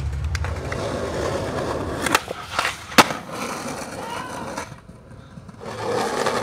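Skateboard wheels rolling on concrete, broken by sharp clacks of the board about two and three seconds in, the loudest near three seconds. The rolling dies away near five seconds, then starts up again just before the end.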